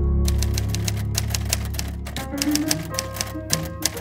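Keys of a manual typewriter struck in a fast, uneven run of sharp clacks, over background music with sustained low tones.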